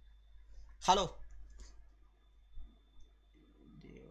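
A man sneezes once about a second in: a short, loud voiced burst with a hissing edge, close to the headset microphone. A softer low rustle follows near the end as he covers his face with his hand.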